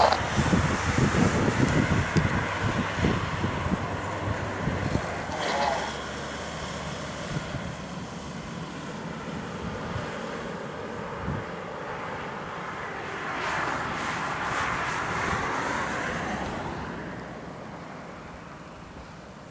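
Distant jet engine noise from a Dassault Falcon 50 business jet on approach, with wind rumbling on the microphone in the first few seconds. The engine sound swells about thirteen seconds in and fades near the end.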